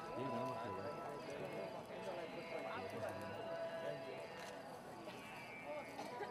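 Crowd babble: many people talking at once, with no single voice standing out.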